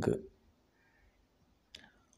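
The tail of a spoken word, then near silence with a single short, sharp click near the end.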